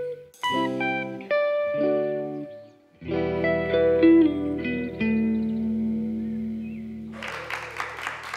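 Clean electric guitars play the last picked notes and chords of a song. After a short pause just before 3 s, a final chord with a held low note rings out. Applause breaks out near the end.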